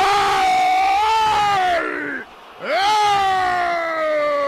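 Radio football commentator's long drawn-out cry of 'gol', sung out on one held vowel. A quick breath comes about two seconds in, then a second long held cry whose pitch slowly sinks.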